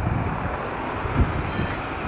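Outdoor street noise with wind rumbling on a camcorder microphone, and a short low thump a little over a second in.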